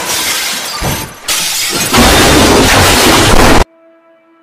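Loud crash sound effect of something smashing and shattering, standing for a fall off the roof. It comes in two surges, the second louder, and cuts off suddenly near the end.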